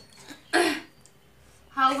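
A person clears their throat once, a short rough sound about half a second in, and then a voice says "hello" near the end.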